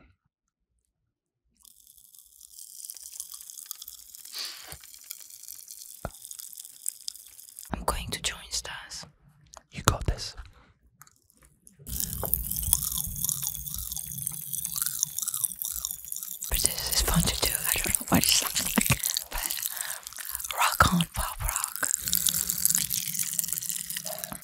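Pop Rocks popping candy crackling and fizzing in a mouth held close to the microphone, faint at first and much denser from about halfway through. A single sharp thump about ten seconds in is the loudest moment.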